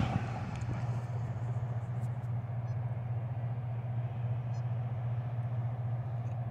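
A steady low engine-like hum with a faint, even wash of outdoor noise, unchanging throughout.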